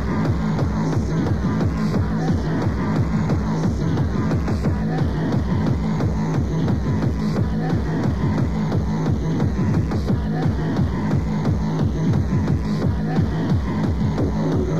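Fast hard tekno from a DJ mix: a rapid, evenly repeating kick drum under strong, sustained low bass notes, with busy electronic sounds above, running at a steady loudness.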